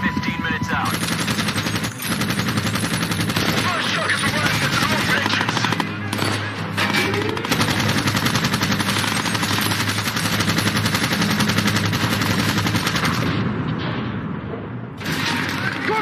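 Sustained rapid automatic gunfire from a vehicle-mounted machine gun in long continuous bursts, layered over a low steady film score. The firing dies away about two seconds before the end.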